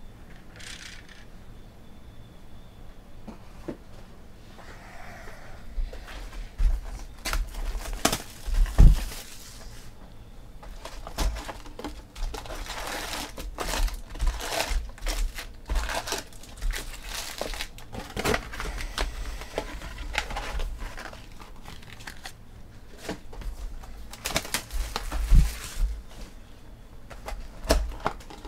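Cardboard trading-card box being opened and handled: the lid flaps lifted and the wrapped card packs inside rustled and crinkling in irregular bursts, with a couple of louder knocks of the box against the table.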